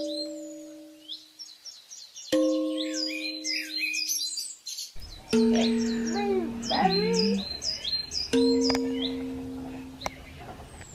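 Birds chirping and tweeting over soft music: two struck notes that ring and fade, then held notes from about five seconds in.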